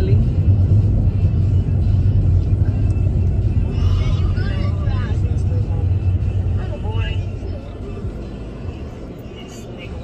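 Car cabin noise while driving: a steady low rumble of engine and road that eases off about three-quarters of the way through. Faint voices and music are heard over it.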